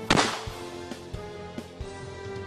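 A single gunshot sound effect about a tenth of a second in, fading over about half a second, over background music.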